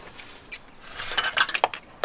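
Light clicks and clinks of drain-inspection gear being handled, a quick cluster of them in the second half.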